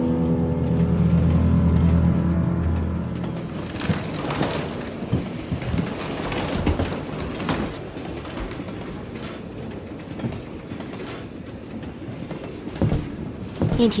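Soft music fades out over the first few seconds, then the running noise of a railway carriage heard from inside the compartment: wheels clicking over the rail joints amid steady rumble and rattling, with a few sharper knocks near the end.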